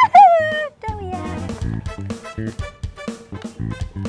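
Background music with a steady beat. Near the start comes a loud, short, high-pitched cry in two parts, each falling in pitch.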